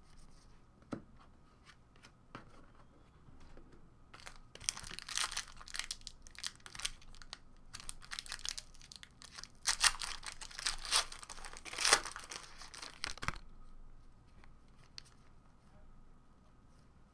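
Foil wrapper of a Contenders Draft basketball card pack being torn open and crinkled, with dense crackling for about nine seconds that stops suddenly. A few light clicks of cards being handled come before it.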